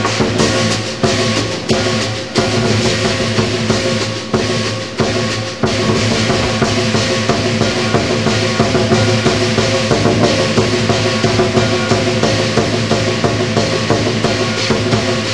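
Lion dance percussion: a big drum beaten rapidly with clashing cymbals and a ringing gong, played together as one loud, continuous beat. It slackens briefly a few times in the first six seconds, then runs on without a break.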